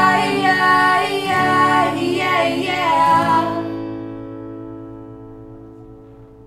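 A man and a woman singing together over a strummed acoustic guitar; about three and a half seconds in the singing stops and the last guitar chord rings on, fading away.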